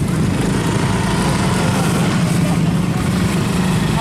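An engine running steadily, an even low drone that does not change, with faint voices underneath.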